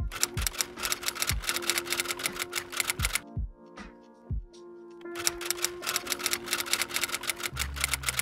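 Typewriter sound effect: two runs of rapid key clicks, the second starting about five seconds in, over soft background music.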